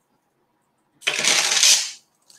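Costume jewellery being rummaged through: metal chains and beads clattering and jangling together for just under a second, starting about a second in.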